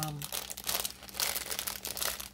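Clear plastic bag crinkling in the hands with irregular crackles, as a strip of small bags of diamond painting drills is taken out of it.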